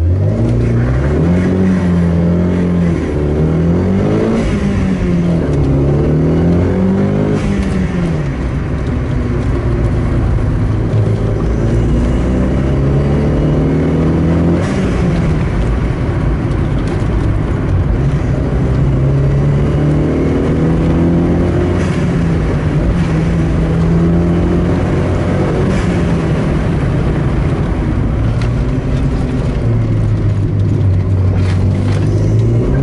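Renault 19's transplanted Mégane RS 2.0-litre turbocharged four-cylinder (F4R 774), heard inside the cabin, accelerating hard from a standing start. Its pitch climbs and falls back at each quick gear change in the first several seconds, then keeps rising and falling as it is driven up the hill.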